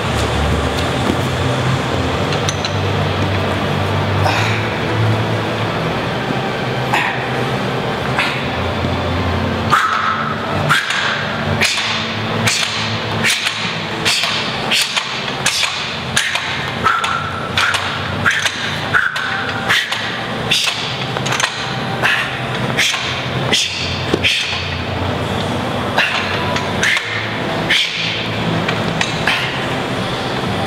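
Two weighted Olympic barbells, their ends wedged against a wall, pressed fast and explosively from the floor. A quick run of short sharp knocks and clinks comes from the bars and plates, about one or two a second, starting about ten seconds in. A low steady hum runs underneath.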